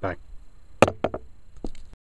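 A few sharp clicks or light knocks: one louder click under a second in, two smaller ones right after it, then a couple of fainter ones near the end, after the tail of a spoken word at the very start.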